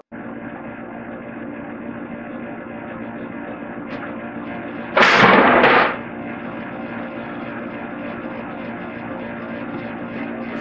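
Wooden boards knocking together as they are handled on a workbench, with one loud clatter about five seconds in, over a steady hum.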